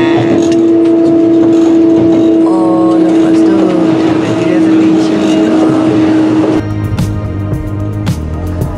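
Steady droning hum inside a moving electric train carriage, with brief voices. About six and a half seconds in the hum cuts off and background music with a steady beat takes over.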